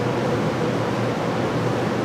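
Steady, even background hiss with no other sound: room tone or recording noise in a pause of the talk.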